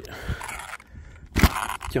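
Handling noise from a hand working the rear suspension of an RC monster truck: light rustling, a small click, then one sharp knock about three quarters of the way through.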